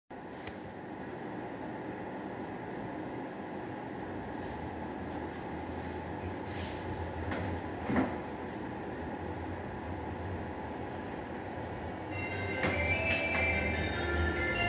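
Gimpo Goldline light-rail train approaching on steel rails, its running noise slowly growing, with a single sharp click about eight seconds in. Near the end a chimed melody starts up, the station's train-approaching chime.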